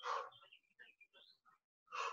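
Two short, forceful exhalations about two seconds apart, with faint breathing and movement sounds between.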